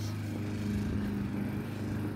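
Lawn mower engine running steadily, a constant low drone.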